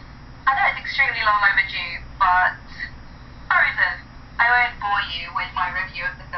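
A woman's voice talking from a vlog video played through a phone's small speaker, thin and tinny, in short stop-start phrases.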